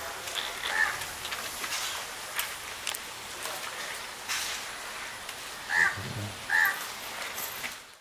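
A crow cawing over a steady outdoor hiss: one short call about a second in, then two louder caws close together near the end.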